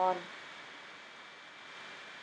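A spoken word ends right at the start, then only a steady faint hiss of room tone with no distinct events.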